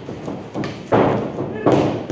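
Heavy thuds from stick sparring in a boxing ring, from feet and bodies on the padded ring floor and stick contact. There are two loud thumps in the second half, each ringing briefly in the hall.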